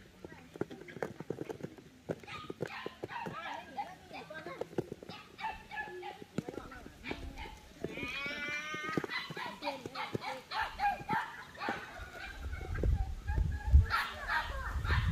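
Voices talking in the background, with light crackling clicks from dried shoots being handled on a plastic tarp. A brief high rising animal call comes about eight seconds in, and a low rumble rises near the end.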